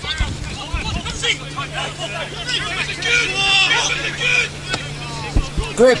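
Shouting voices of players and spectators around an outdoor football pitch during play, over a steady low hum. Louder shouts come near the end.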